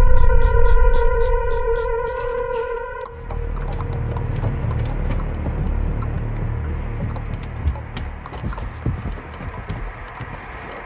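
Horror film score: a loud sustained droning tone with a hard edge that cuts off abruptly about three seconds in. A low rumbling drone with scattered faint clicks follows and slowly fades.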